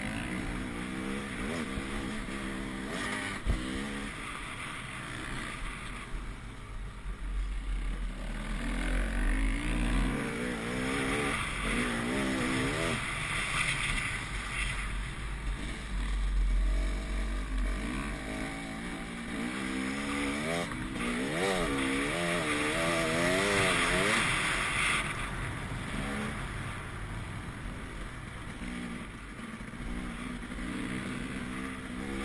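Dirt bike engine picked up by a helmet camera, its pitch rising and falling again and again as the throttle is opened and closed, with quick up-and-down revs about two-thirds of the way through. Low wind buffeting on the microphone comes and goes.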